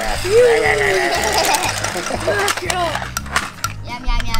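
A high-pitched voice crying out and squealing in play over background music with a steady beat, with light clicks of plastic toy trucks knocking and rolling on a wooden table.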